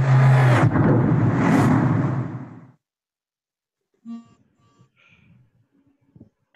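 Closing sound effect of an intro video played back: a loud rushing noise over a deep hum that swells again about a second and a half in, then cuts out after under three seconds. A few faint short tones follow near the end.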